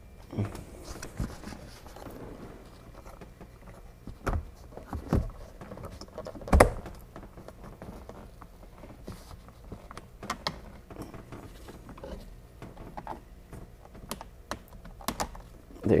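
Plastic clicks, taps and rubbing as a C5 Corvette sun visor is handled and fitted into its roof mount: irregular small knocks, with the sharpest knock about six and a half seconds in.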